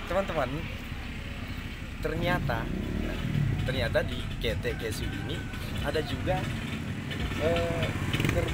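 Quiet talking in short phrases over a steady low rumble.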